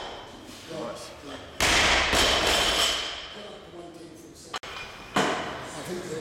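Barbell loaded with rubber bumper plates dropped onto the gym floor: a loud crash with the steel bar and plates ringing and rattling as it settles, dying away over a second or so. A second, shorter thud comes near the end.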